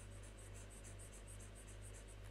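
Faint, rapid scratching of a pen stylus hatching across a graphics tablet, about four or five short strokes a second, over a steady low electrical hum.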